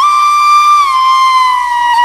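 Solo flute music: one long held note that slides a little lower about a second in and sinks slowly from there.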